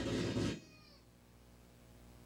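A man's voice drawing out the end of a word, which trails off about half a second in, followed by quiet room tone with a low hum.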